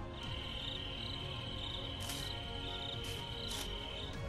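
Soft background music holding a steady drone, with a thin, high, steady insect-like trill and regular chirps over it. A few short hissy bursts come about halfway through and near the end.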